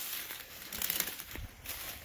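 Footsteps crunching through tall dry grass and weeds: an irregular crackling rustle.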